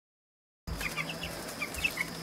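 Silence, then about two-thirds of a second in, a brood of two- to three-week-old Cornish Cross broiler chicks peeping in short, scattered chirps over a faint steady hum.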